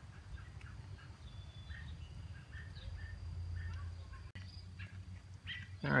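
Faint outdoor ambience: scattered short bird chirps and a thin, steady high insect trill over a low rumble.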